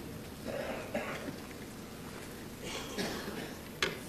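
Hushed snooker arena audience: a few scattered coughs and throat clearing, with one sharp click near the end.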